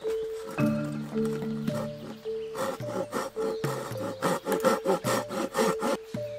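A folding hand saw cutting dovetail shoulders into a seasoned ash step board in a quick run of back-and-forth strokes, mainly in the second half, over background music with sustained notes.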